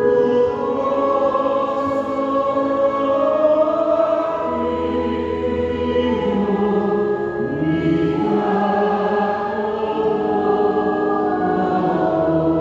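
Organ playing a hymn in slow, sustained chords that change every second or two.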